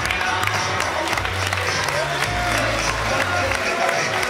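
A wrestler's entrance music playing over the arena speakers, with a steady bass line, while the crowd applauds and cheers.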